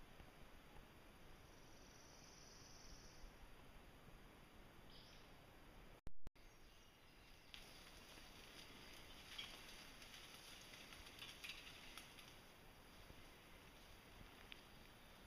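Faint rustling and crackling of leafy branches as a pannier-loaded bicycle is pushed through a fallen tree, after several seconds of near silence. A brief sharp click comes about six seconds in.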